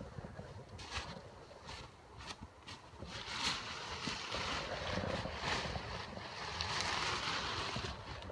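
Rustling and crinkling of tent nylon as the bundled inner tent is handled and pulled into the outer tent, with a low rumble of wind or handling on the microphone. It cuts in suddenly, with several sharp rustles in the first few seconds and a steadier rustling after.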